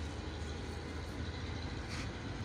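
A steady low rumble with an even faint hiss over it, unchanging throughout.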